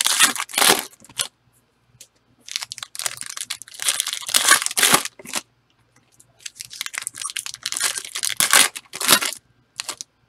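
Foil wrapper of a football trading-card pack being torn open and crinkled, in three spells of crackling with short quiet gaps between.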